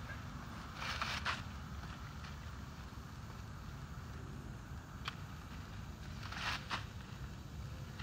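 Hand pruners cutting woody blackberry floricanes at the base, with the rustle of canes and leaves being handled. There is a short scratchy burst about a second in, a single sharp snip about five seconds in, and another short burst a little later.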